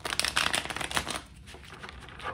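A deck of tarot cards being riffle-shuffled by hand: a fast run of card clicks for about the first second, then quieter handling of the deck.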